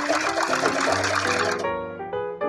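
Domestic sewing machine stitching through cloth, a fast run of needle clicks that stops about one and a half seconds in. Background music plays underneath.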